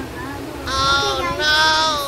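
A young girl singing two long held notes, one after the other, starting a little under a second in.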